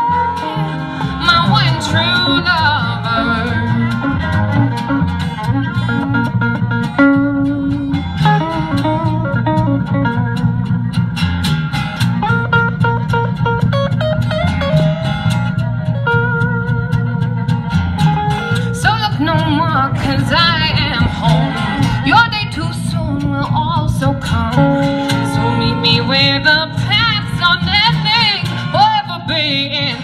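Live folk band playing an instrumental break between verses: electric and acoustic guitars with fiddle over a bass line.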